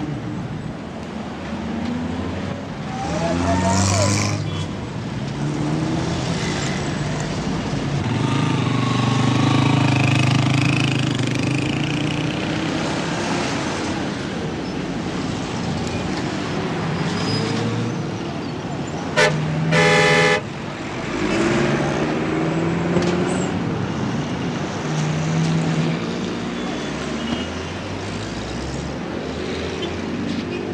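Busy street traffic, with engines running and vehicles passing steadily. About twenty seconds in a car horn sounds: a brief toot, then a longer blast.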